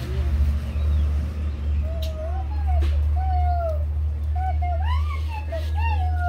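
Steady low rumble of wind on the microphone. From about two seconds in come several short animal calls that rise and fall in pitch, and a few sharp clicks.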